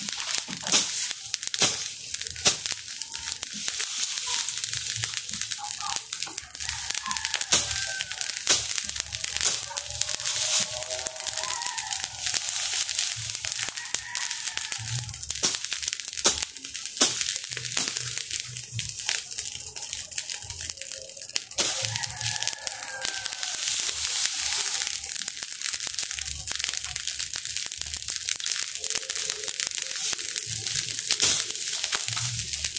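Pile of cut dry grass and weeds burning, crackling and popping steadily with many irregular sharp snaps.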